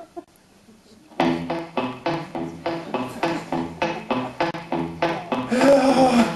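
About a second in, guitar and upright bass start a steady, even rhythm of about three strokes a second: plain chords played straight through with no lead break. The playing fills out near the end.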